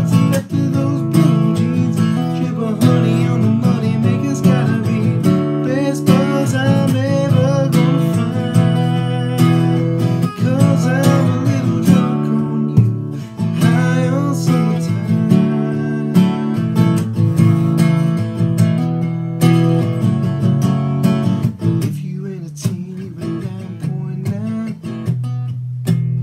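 Taylor GS Mini acoustic guitar, capoed at the second fret, strummed steadily through chords, with a man singing along.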